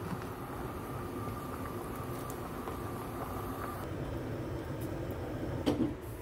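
Pasta water at a rolling boil in a steel pot, a steady bubbling rush, with a brief knock just before the end.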